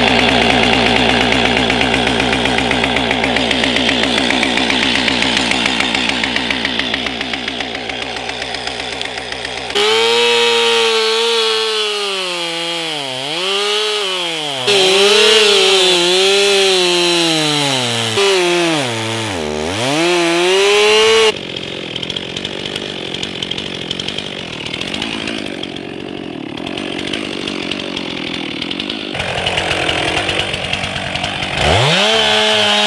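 Two-stroke chainsaw running at steady high revs, then cutting into a tree trunk, its engine pitch dipping several times as the chain bogs under load and picking back up. About two-thirds through it is heard from farther off and sounds rougher.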